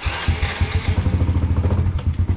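A small motorcycle engine starts with a brief burst of noise and settles at once into a steady idle with a fast, even putter.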